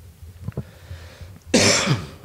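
A single short, loud cough about one and a half seconds in, after a quiet stretch of room tone.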